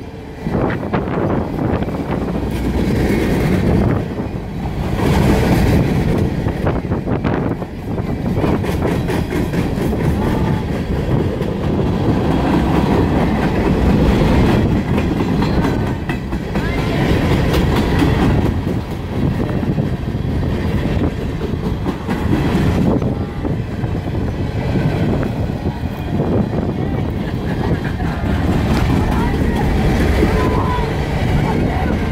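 A long freight train's hopper cars rolling past close by, steel wheels on the rails making a loud, steady rumble with rapid repeated clacks.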